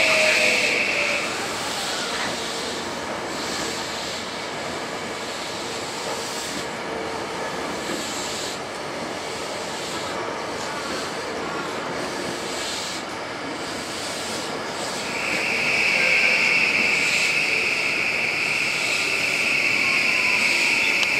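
Tokyu 2020 series electric train rolling slowly into the station with a steady rumble of wheels on rail. Its motor whine falls in pitch in the first second as it brakes. A steady high-pitched tone sounds at the start and comes back about fifteen seconds in.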